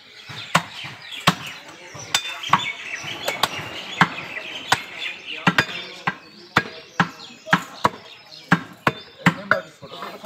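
A butcher's cleaver chopping beef on a wooden log chopping block: sharp, irregular strikes, about two a second.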